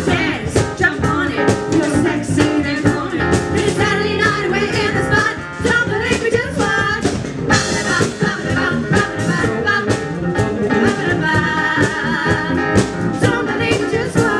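Live funk band playing: a drum kit keeping a steady beat under bass guitar and electric keyboard, with women's voices singing over it.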